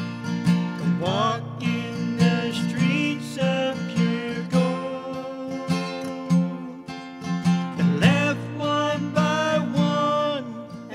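Acoustic guitar strummed in a steady rhythm under a singing voice, in a song with long held notes that waver.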